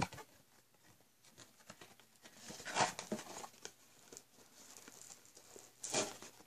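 Faint rustling and scraping as a cardboard trading card box and its packaging are handled, with scattered small clicks and a louder rustle about three seconds in and another near the end.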